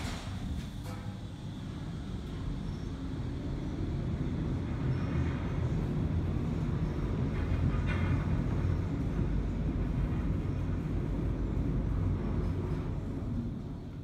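Otis traction elevator car travelling up several floors: a steady low rumble that builds in the first few seconds as the car gets under way, holds even, and eases off near the end as it slows for the floor.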